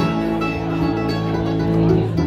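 Acoustic bluegrass band playing an instrumental passage: mandolin, acoustic guitar, banjo and upright bass, recorded through a phone's microphone.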